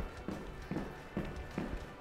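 Soft, evenly spaced thuds of sneakers landing on a wooden floor, about two a second, from light hopping on the spot as in skipping rope.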